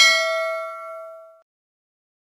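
A single bell ding sound effect, struck once and ringing out with a bright, decaying tone for about a second and a half before cutting off, marking the click on the notification bell icon.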